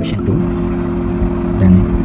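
A steady low hum, with a single sharp click just after the start and a brief low voice sound near the end.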